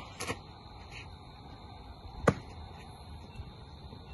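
A pitched baseball popping into a catcher's mitt: one sharp, loud smack a little over two seconds in, with a brief softer scuff just before it near the start.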